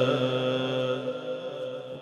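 Unaccompanied devotional naat singing: the end of a long held note over a steady background drone of voices, growing quieter toward the end.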